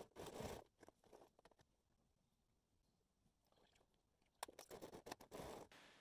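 Near silence, with faint rustling and scratching of cloth being moved by hand at a sewing machine, briefly at the start and again with a few soft clicks about four and a half seconds in.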